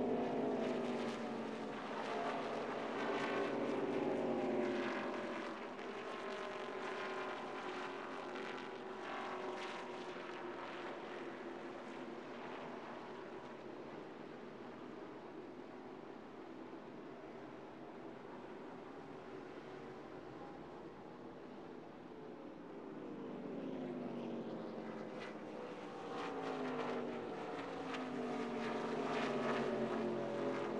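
A NASCAR stock car's V8 engine heard from inside the cockpit. Its pitch drops several times, near the start and again in the last few seconds, as it comes off the throttle, with a steadier, quieter stretch in between.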